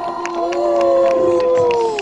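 A female pop singer's live vocal holding one long note that rises in about half a second in and then sags slowly in pitch, over sustained backing chords that fade out partway through. All of it comes through a concert PA system.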